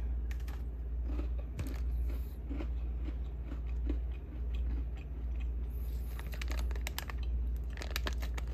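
Close-up chewing of a bitten chocolate sandwich cookie (a Lenny & Larry's plant-based protein creme cookie), with small crunchy clicks, over a steady low hum.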